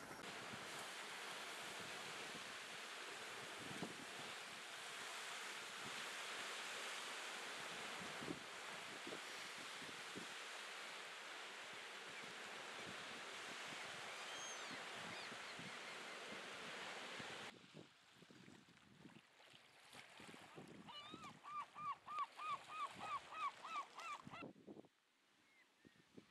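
Small waves washing onto a shore, a steady wash of water noise that stops suddenly about 17 seconds in. Then a bird gives a quick series of short repeated calls, about four a second, for several seconds.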